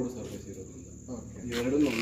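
A steady high-pitched insect trill runs throughout, with a person's voice briefly near the end.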